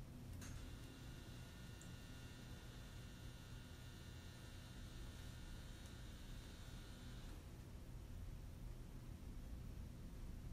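Quiet room tone with a steady low hum. A faint high-pitched whine starts with a click about half a second in and cuts off suddenly at about seven seconds.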